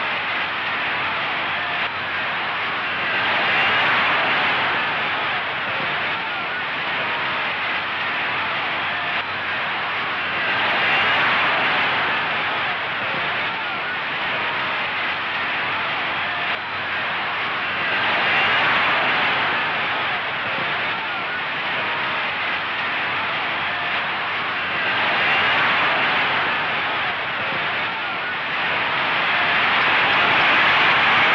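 Steady rushing noise with no words, swelling and easing about every seven seconds.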